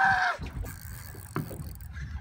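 A short, high-pitched cry at the start, then a steady low rumble of wind on the microphone over open water.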